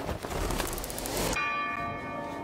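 A rushing noise cuts off sharply about a second and a third in, and a bell-like chime rings on, holding several steady tones at once.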